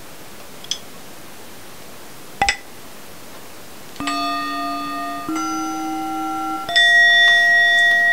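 Meditation timer app's singing-bowl bell sounds previewed one after another: after two short faint clicks, three different bowl strikes from about four seconds in, each ringing steadily until it is cut off by the next at a new pitch, the last the highest and loudest.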